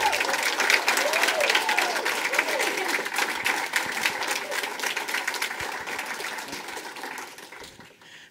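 Small group applauding, the clapping dying away gradually and ending near the end.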